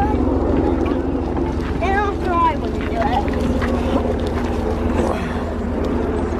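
Low, steady drone of an aircraft passing overhead, with a fast, even pulsing under it; the listeners take it for a helicopter hidden in the clouds.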